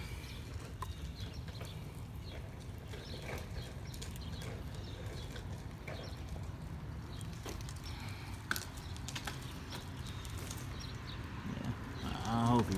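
Fingers picking and scraping through wet, muddy soil: faint scattered clicks and soft rustles over a steady low background rumble, with one sharper click about two thirds of the way through.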